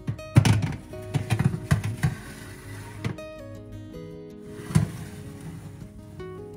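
Metal baking tray clattering and knocking against the oven rack as it is slid into an oven, several sharp knocks in the first two seconds and another loud knock near the end, over background guitar music.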